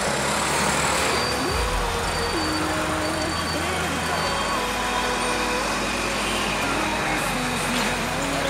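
Busy city street: steady traffic noise with people's voices talking, and a low engine hum for a few seconds in the first half.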